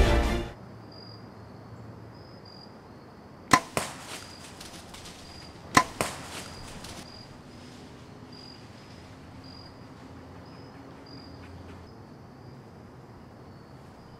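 Compound bow shot at a deer: two sharp snaps about two seconds apart, each followed quickly by a lighter knock. Between them lies a quiet wood with a faint, broken high chirping.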